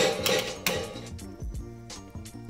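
E-mu SP-12 Turbo sampling drum machine playing back the drum samples just reloaded into bank 2 from the floppy-disk emulator, showing that the load worked: a rhythmic run of percussive hits with pitched tones, loudest in the first second and growing quieter.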